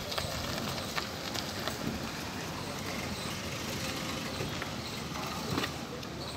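A small Hyundai hatchback driving slowly past on a rough gravel road, its tyres and engine heard over outdoor background noise, with scattered footstep clicks and faint voices.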